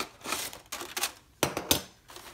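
Aluminum foil crinkling as it is pressed and crimped down over a disposable aluminum pan, in irregular crackles with a few sharper snaps about one and a half seconds in.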